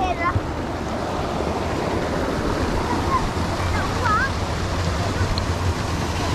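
Steady rush of water spilling over a small weir into a canal.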